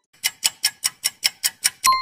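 Quiz countdown-timer sound effect: a rapid clock-like ticking, about five ticks a second, ending near the end in a single bell ding that rings on, signalling that time is up and the answer is revealed.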